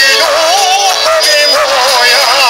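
Live folk orchestra music, a melody line with a strong, even vibrato over a dense accompaniment.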